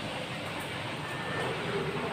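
Steady background noise with no distinct event, with a faint brief tone about a second in.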